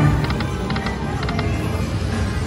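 Aristocrat Timberwolf video slot machine's reel-spin sound during a free game: short electronic ticks in little clusters, about two clusters a second, over steady background sound.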